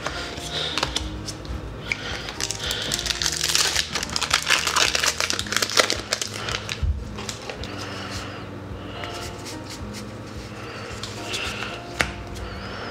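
Foil booster-pack wrapper crinkling and tearing as it is opened, densest in the first half, over soft background music.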